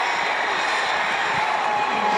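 Stadium crowd cheering, a steady wash of noise: the home crowd reacting to its team recovering a fumble.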